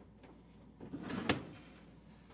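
Wooden dresser drawer sliding along its runners and knocking shut about a second in.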